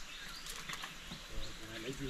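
Quiet outdoor ambience with a few faint, short high bird chirps, then a low voice murmuring in the second half.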